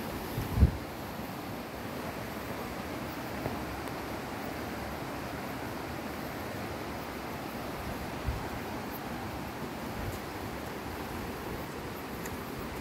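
Steady rushing outdoor wind noise on a phone's microphone. A few low thumps of wind buffeting or handling stand out, the loudest about half a second in.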